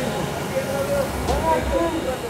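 Voices calling with rising and falling pitch over a steady low rumble.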